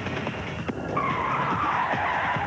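A long skidding screech that starts about a second in and slides slightly down in pitch, over a dense noisy bed with a single click shortly before it.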